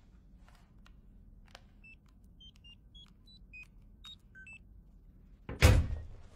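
Electronic security keypad beeping as a code is entered: about nine short beeps, each at a different pitch, over nearly three seconds. A loud sudden burst of noise follows just before the end.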